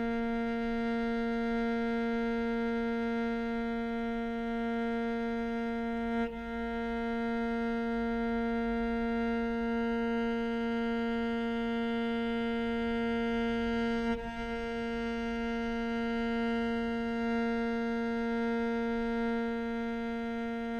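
Solo cello holding one long bowed note at a steady level, re-bowed with brief breaks about six seconds and fourteen seconds in.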